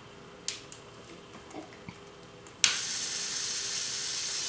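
A few light clicks of plastic Lego Technic parts being handled, then a sharp click about two-thirds of the way in as the model's small electric motor switches on and runs with a steady high whir.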